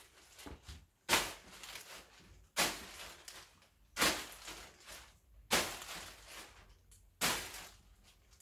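Plastic carrier bag crinkling as it is tossed up and caught one-handed: five sharp rustles about a second and a half apart.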